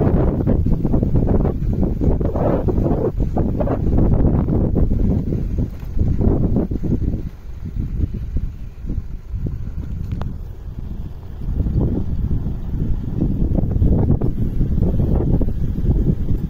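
Wind buffeting the microphone of a moving motorcycle: a heavy, uneven low rumble that eases for a few seconds mid-way and then builds again.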